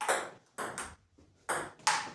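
A table tennis ball in a rally: about five sharp clicks as it is struck by paddles and bounces on the table.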